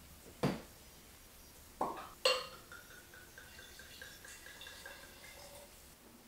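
Glassware clinking: a sharp knock about half a second in, then two more close together about two seconds in. The last leaves a clear ringing tone that fades away over about three seconds.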